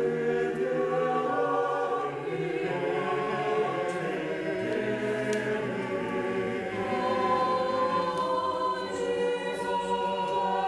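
A choir singing slow, sustained chords.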